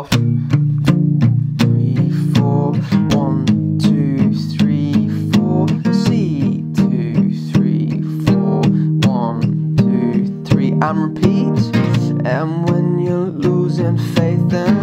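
Steel-string acoustic guitar, capoed at the third fret, strummed softly with palm muting through a G, Fsus and C chord progression in an even rhythm. A man sings quietly over the chords.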